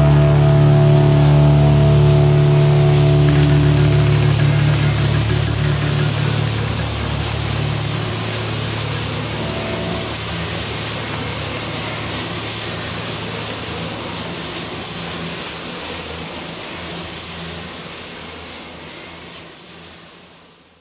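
The final held chord of a stoner-rock band ringing out, with distorted guitars and bass. The sustained notes die away over the first ten seconds or so, leaving a noisy wash that slowly fades out.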